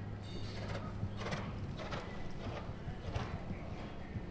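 Horse's hoofbeats on a sand dressage arena: a soft, uneven beat of footfalls, roughly two a second, over a steady low hum.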